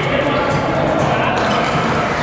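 Busy badminton hall: rackets striking shuttlecocks as short sharp hits across several courts, over the voices of players.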